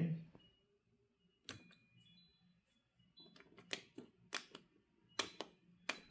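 Front-panel membrane buttons of a 1987 Yamaha DX7 being pressed: a string of short clicks, sparse at first, then several a second over the last three seconds as the old buttons are pressed again and again.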